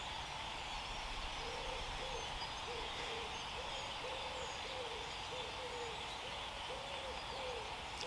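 A bird hooting in the distance: a run of short, low, arched notes, repeated in quick groups from about a second and a half in until near the end, over faint woodland ambience.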